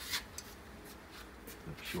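Soft handling rustle with a few short clicks, one of them the first relay of a Krell FPB 600 power amplifier clicking in as it begins powering up from the mains switch.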